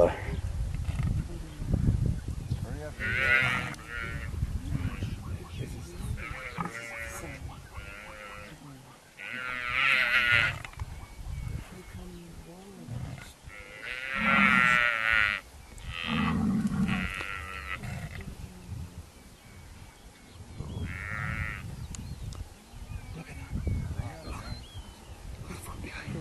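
Animal calls in a hyena attack on a buffalo and her calf: high-pitched cries in bursts of about a second, repeated several times, with two lower calls near the middle.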